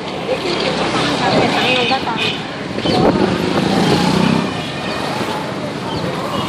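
Busy street ambience: several people's voices talking over passing traffic, with a vehicle engine loudest from about three seconds in for a second and a half.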